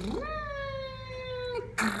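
A woman's drawn-out wordless vocal sound, made with pursed lips. It swoops up sharply, then is held for about a second and a half while slowly sinking in pitch.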